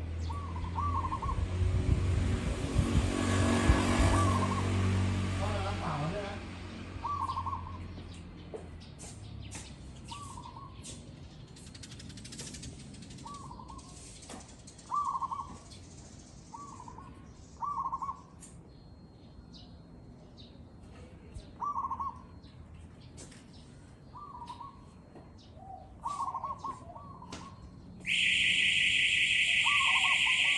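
Zebra dove cooing: short, quick phrases repeated every one to three seconds. A loud rushing sound with a low hum swells and fades over the first six seconds, and a loud steady high electronic tone starts about two seconds before the end.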